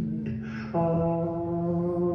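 A man's voice holding long wordless notes in a slow folk ballad with acoustic guitar, stepping up to a new, louder note about three-quarters of a second in. The soundtrack is heard through a television's speakers.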